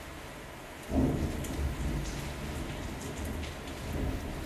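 Steady rain falling on window glass, then about a second in a sudden loud thunderclap that rolls on as a low rumble, swelling again near the end.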